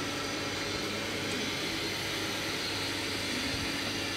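Steady hum and hiss of a steam-heated mawa kettle running, its electric geared stirrer motor turning the scraper arms through boiling milk.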